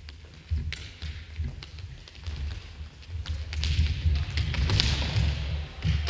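Futsal ball being dribbled and struck on a wooden sports-hall floor: sharp taps of touches on the ball among thuds of running footsteps, echoing in the hall. The activity gets busier and louder in the second half.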